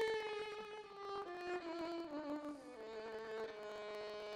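Orchestral violin section bowing a slow line of held notes that step down in pitch.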